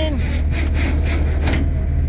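Rollback tow truck's engine running steadily with the PTO engaged to drive the bed hydraulics, a low even drone, with a brief metallic clink about one and a half seconds in as the tie-down chains and winch cable are set.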